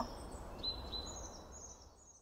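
Faint outdoor ambience with a few high bird chirps about halfway through, fading out to silence near the end.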